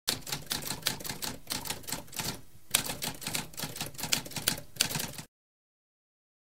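Typewriter typing, a fast run of keystroke clacks with a brief pause about halfway through, stopping about three-quarters of a second before the end.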